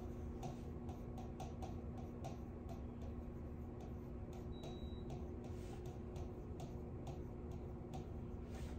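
A stylus ticking and tapping against the glass of a touchscreen display as words are handwritten, a couple of irregular ticks a second, over a steady low hum.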